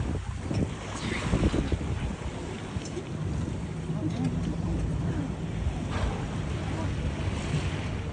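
A whale-watching boat's engine running with a steady low drone, under wind buffeting the microphone and water rushing along the hull.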